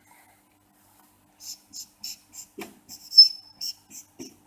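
Whiteboard marker squeaking on a whiteboard in short writing strokes, starting about a second and a half in; near the end one stroke gives a louder, held high squeal.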